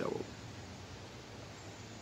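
A man's last word ends at the start, followed by a pause holding only a faint, steady low hum in the background.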